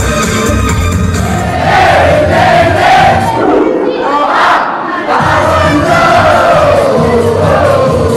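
A crowd of dancers singing and shouting along together over loud dance music. The music's beat drops out about three and a half seconds in and comes back about five seconds in, while the crowd's voices carry on.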